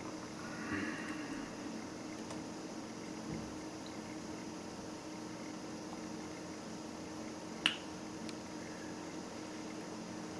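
Quiet room tone with a steady low hum, broken by a single sharp click near the end.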